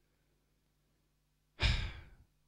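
Near silence, then about one and a half seconds in, a man's sigh breathed close into a handheld microphone that fades away over half a second.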